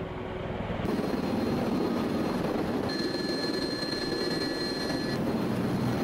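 V-22 Osprey tiltrotor running close by, a steady rushing drone of rotors and engines that grows louder about a second in. A faint high whine sits on top of it through the middle.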